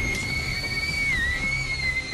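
A woman's long, high-pitched scream, held steady with a brief dip in pitch about a second in, over a low music drone.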